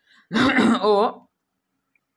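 A person clears their throat once, a short harsh sound lasting about a second.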